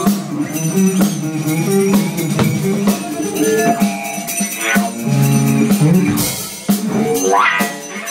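A live rock band playing loud: electric guitar over a drum kit with steady, regular hits. A rising sweep comes in near the end.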